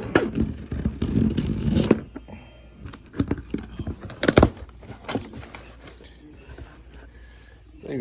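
A knife slitting packing tape along the seam of a cardboard box, a rasping scrape for about two seconds, then cardboard flaps being handled and pulled open with a few thunks and rustles.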